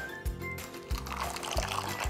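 Milk poured from a jug into a glass mixing bowl of whisked eggs and sugar, heard under background music with a steady beat.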